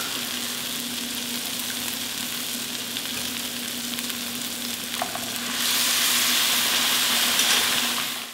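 Arborio rice and asparagus tips sizzling in hot oil in a nonstick pan as a wooden spatula stirs them. About five and a half seconds in, a ladle of warm chicken stock goes into the hot pan and the sizzle turns louder and hissier.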